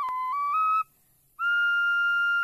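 Short intro jingle on a high, pure-toned whistle: a note that steps down and back up, breaks off just before a second in, then one long held note starting about halfway through.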